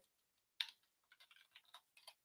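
Faint typing on a computer keyboard: one clearer keystroke about half a second in, then a quick run of soft key taps.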